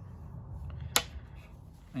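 A single sharp tap about a second in, as a small item is put down or picked up on a wooden desk, over a low steady hum.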